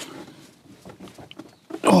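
Ratchet wrench working a tight seat-mounting bolt in a car's cargo floor: quiet clicks and metal handling, with a low strained vocal sound of effort.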